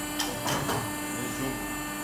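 Automatic die cutting press for jewellery dies switched on and humming steadily, with three sharp clicks in the first second.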